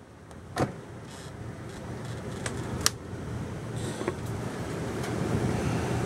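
Steady hum of the motorhome's running Onan gasoline generator, growing louder, with a thud about half a second in and a few sharp clicks and knocks as the refrigerator door is shut and the metal stovetop cover is lifted.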